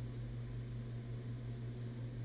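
Room tone: a steady low hum with a faint hiss underneath.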